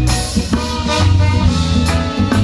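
A live band playing an instrumental passage, with a loud bass line and a steady beat on the drums.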